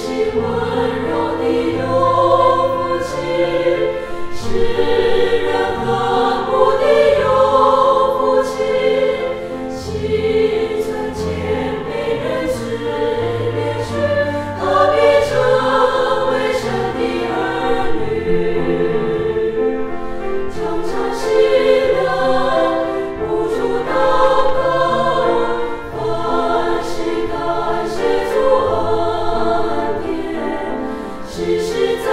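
Women's choir singing a hymn together, with an accompanying instrument holding low notes beneath the voices.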